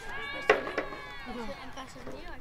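Shouts and high-pitched calls from several players' voices across a playing field during a flag football game, with a sudden loud sound about half a second in.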